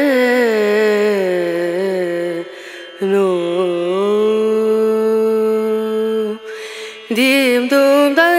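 Background music: a single voice singing long, held notes that slide down and up in pitch, breaking off briefly about two and a half seconds in and again about six and a half seconds in.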